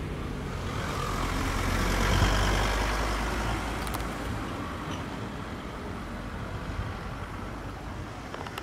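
A motor vehicle passing by: a low rumble that grows louder for about two seconds and then slowly fades away.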